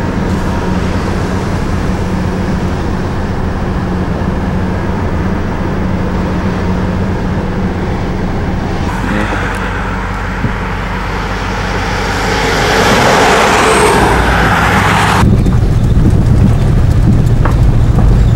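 Car engine and road noise heard from inside the cabin, a steady hum. Then a Shortline motor coach approaches on the highway, a rising roar of engine and tyres that swells over a few seconds and cuts off suddenly. A lower cabin rumble follows as the car drives on a dirt road.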